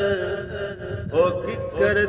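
A man singing Punjabi Sufi verse in a slow, melismatic style, holding long notes with a wavering pitch. One phrase ends about a second in and the next begins.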